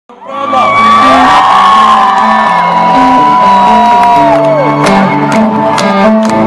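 Live rock band playing, a bass line stepping between notes, with the crowd cheering and whooping over it; long held whoops fall away about four and a half seconds in, and drum hits come through near the end.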